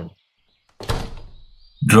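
Door sound effect: a single door shutting about a second in, a sudden knock that dies away over about a second.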